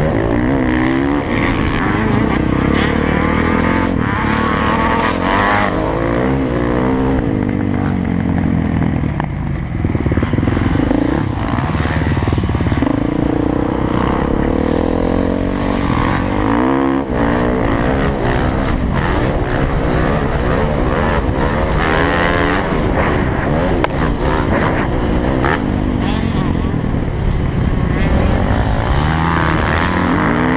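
Dirt bike engine, ridden hard around a motocross track, loud and close. The pitch repeatedly climbs as the rider accelerates and drops as he backs off or shifts.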